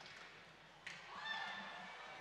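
Faint ice-rink game sound of skates and sticks on the ice, with a sharp stick-on-puck click just under a second in, followed by a faint, distant high-pitched call.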